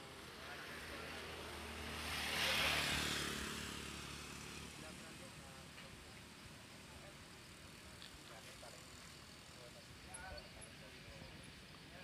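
A road vehicle passing by, its noise swelling to a peak about two and a half seconds in and then fading away, over a low steady hum.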